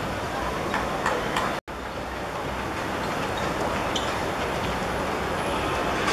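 Steady outdoor background noise from an open-air football pitch, with a few faint clicks in the first second and a half. The sound cuts out completely for a moment about one and a half seconds in.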